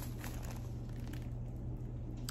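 Faint crinkling of plastic-wrapped sanitary pad packs being handled, over a steady low hum.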